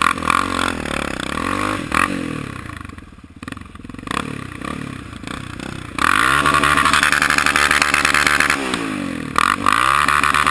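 Quad bike engine revving up and down as it rides, then opened up hard about six seconds in, holding high revs with a loud rushing noise over it, before easing off and climbing again near the end.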